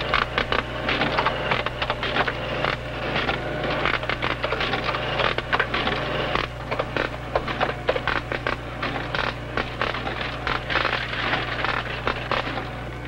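Irregular clicks, clatter and rustling of goods being handled and rung up on a store cash register, over a steady low hum.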